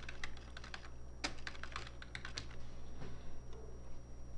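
Typing on a computer keyboard: a quick run of key clicks that thins out near the end, over a steady low electrical hum.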